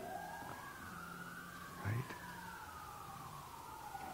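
A faint siren wailing, its pitch sliding slowly up and down over a few seconds, with two wailing tones crossing each other.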